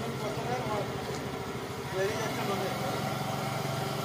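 Small motor scooter's engine idling steadily while stopped, with voices talking over it.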